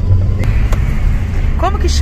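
Steady low rumble of a moving car's engine and road noise, heard from inside the cabin. A voice starts near the end.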